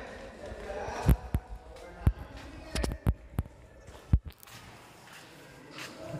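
Footsteps, heard as about seven sharp, irregular thumps over three seconds, over faint voices in the first second.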